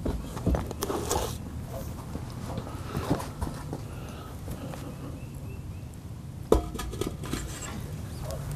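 Handling noise as a heavy ceramic kamado grill is lifted out of its metal cart: scattered knocks and rustles, with a short run of sharper knocks about six and a half seconds in.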